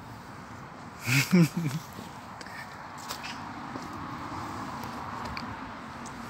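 A brief vocal sound from a person about a second in, then steady outdoor background noise.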